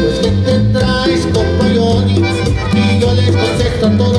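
Norteño music played live on a small diatonic button accordion with an electric bass: held accordion notes over a stepping bass line and a steady beat.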